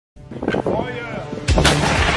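A heavy gun firing: a sudden loud blast about one and a half seconds in, with a rumble that carries on after it. A short, quieter stretch of voices or music comes before it.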